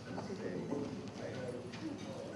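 Faint background voices of people talking in a hall, with a few light ticks and knocks.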